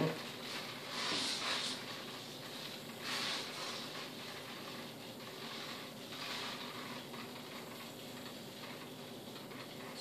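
Quiet handling of a foam RC glider as its battery is slid forward and the plane is lifted to check its balance: two brief soft rustles about one and three seconds in, then faint room tone.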